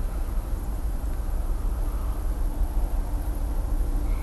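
A steady low rumble with a faint hiss. This is outdoor background noise on the camera's microphone, with no distinct event in it.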